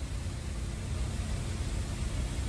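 Steady outdoor background noise: a low rumble with a light hiss over it.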